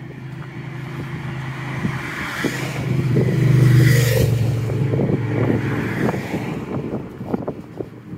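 A motor vehicle passes on the road alongside, its steady engine note and tyre noise swelling to a peak about four seconds in, then fading away.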